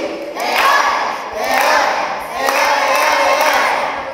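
A group of children shouting and cheering together in a few loud phrases, each about a second long, for a birthday surprise.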